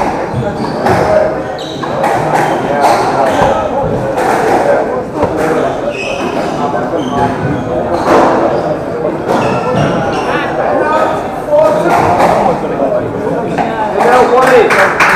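Squash ball being struck by rackets and hitting the court walls again and again during a rally, over continuous chatter of spectators' voices.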